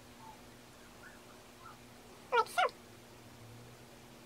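Two short, rising, high-pitched calls from an animal, close together a little past halfway, with a few fainter chirps before them.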